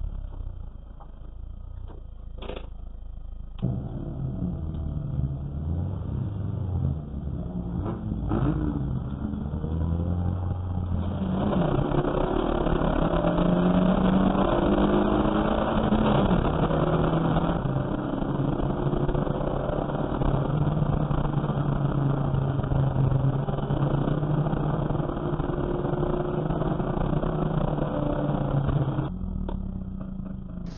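Engine of a small saloon race car heard from inside the cabin. It runs low and fairly steady at first, with a couple of short knocks. From about eleven seconds in it is louder and pulling on track, its pitch rising and falling through the gears, and it drops back shortly before the end.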